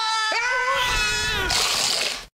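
A woman's long, high-pitched scream, held on one pitch with two brief catches in it. About one and a half seconds in it gives way to a burst of hissing noise over a low rumble.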